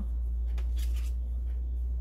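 Braided cord rustling faintly as it is handled and wound around a post, over a steady low hum.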